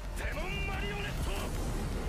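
Anime soundtrack: a character's voice calling out an attack over dramatic background music and a steady low rumbling sound effect.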